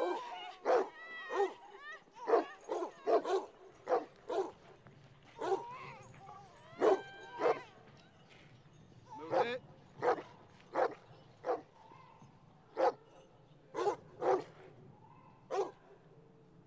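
Dogs barking repeatedly in short, uneven bursts, some barks high and yelping. A low steady hum runs underneath from about four seconds in.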